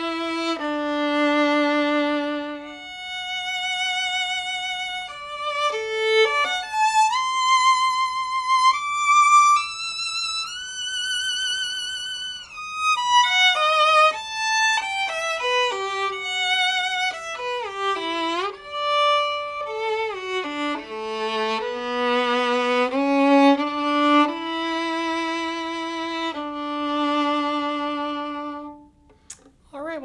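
Holstein Traditional Red Mendelssohn violin with Thomastik Dominant strings, played solo with the bow. A slow melody of long notes with vibrato climbs to high held notes, descends to the low strings, and ends shortly before the close.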